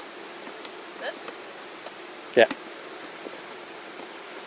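A mass of Buckfast honeybees from an opened package colony buzzing steadily, with a few faint clicks from handling the hive and package.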